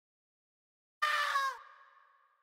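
A single short pitched sample from the drill beat, voice-like, starts suddenly about a second in after silence. It slides slightly down in pitch for about half a second, then fades out in an echoing tail.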